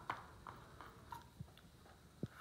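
A few faint, soft taps and paper rustles as small paper cutouts are picked from a plastic tray and laid down on a paper worksheet on a tabletop.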